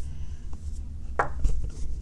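Handling noise from a camera being picked up and moved about: a low rumble with a few light knocks and rubs.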